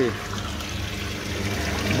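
Steady background noise of an indoor market hall: a low hum with an even hiss over it.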